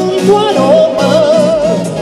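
Live band music with a lead vocal; about halfway through the singer holds a note with wide vibrato over the band.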